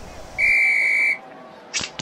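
Referee's whistle blown once: a single steady, shrill blast lasting under a second, signalling the jump-ball tip-off.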